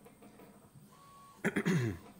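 A man clearing his throat once, about a second and a half in, after a quiet stretch of room tone.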